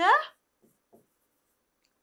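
A spoken word ends at the very start. About half a second to a second in come a few faint short taps and scrapes of a pen writing on an interactive whiteboard screen, then near silence.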